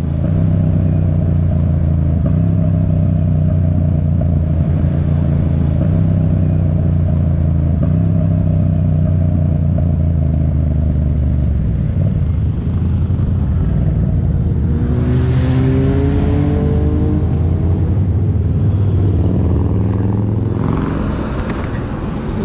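Yamaha MT-07 parallel-twin motorcycle engine running under way, heard from the rider's seat; its note shifts every few seconds as the throttle changes. It eases off near the end as the bike slows.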